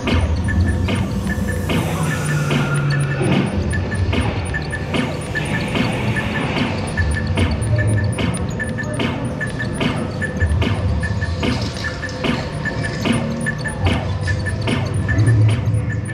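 Dark-ride soundtrack music mixed with rapid, repeated electronic beeps and clicks from the ride's interactive guns being fired at targets, over recurring low booms.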